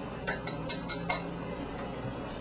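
Five quick, evenly spaced clinks of a small cup tapped against the rim of a mixing bowl, knocking out the last of the dry seasoning.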